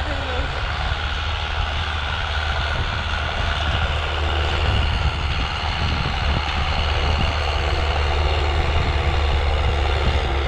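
Preet 6049 tractor's diesel engine running steadily under load while it pulls a harrow through soil. It grows gradually louder as it comes closer.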